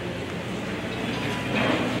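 Steady rushing background noise in a pause between spoken sentences, growing slightly louder near the end.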